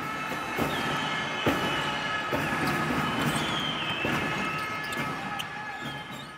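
Basketball-court sounds: a ball bouncing on hardwood a few times at irregular intervals and shoes squeaking, over a steady held tone, faded in and out.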